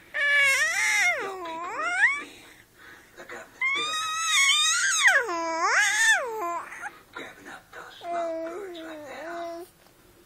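A toddler's high, drawn-out whiny cries, each sliding down and back up in pitch: two long loud ones, then a softer, lower one near the end.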